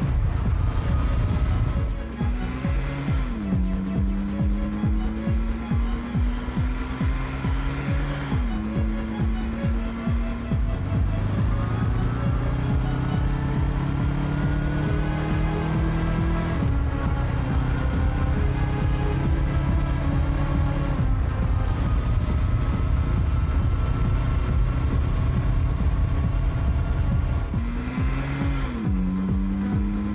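Motorcycle engine pulling through the gears. Its pitch climbs for several seconds, then drops at each gear change, over background music.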